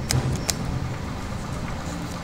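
A steady low mechanical hum, with two sharp clicks about half a second apart near the start.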